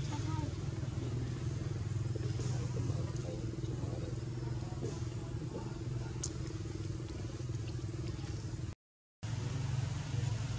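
A steady low engine hum, like a motor idling nearby, at an even level, cutting out abruptly for a moment near the end.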